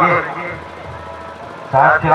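A man's Hindi football commentary: a phrase ends at the start, then a pause of about a second filled with faint, even background noise from the ground, then he starts speaking again near the end.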